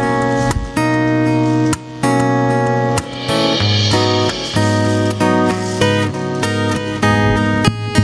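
Live band playing the opening bars of a rumba-style song: acoustic guitar strumming rhythmic chords over an electric bass line.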